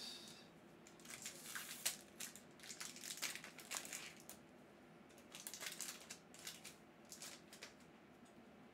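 Foil wrapper of a Magic: The Gathering draft booster pack crinkling in soft, irregular bursts as it is torn open by hand.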